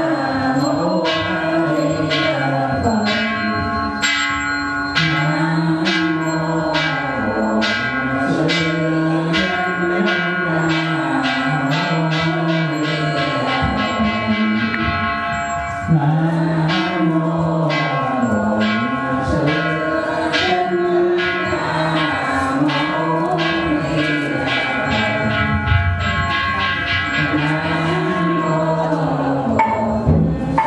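Buddhist processional music: a melody chanted over a bell struck in a steady rhythm of about two strikes a second, its ringing tones carrying between the strikes.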